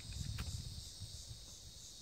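Steady, high-pitched chorus of insects, with a faint low rumble and a single soft click a little under half a second in.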